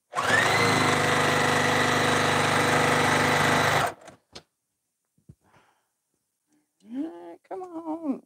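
Juki TL-2010Q straight-stitch sewing machine running fast for nearly four seconds: the motor spins up at the start, holds a steady whir, then stops suddenly. A few light clicks follow as the work is handled.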